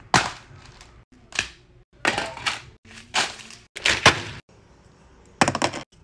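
Sandwich cookies in their plastic-wrapped pack being handled and twisted apart: about six short bursts of crinkling and cracking, each cut off sharply.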